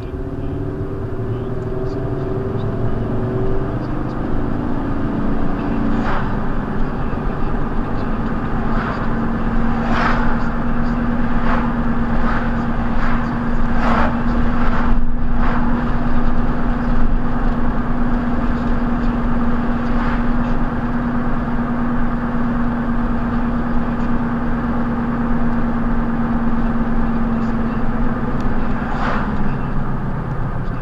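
A car pulling away from a stop and speeding up to about 50 mph, heard from inside the cabin: engine note shifting as it accelerates, then a steady engine and road drone at cruising speed. Occasional short knocks sound through the middle.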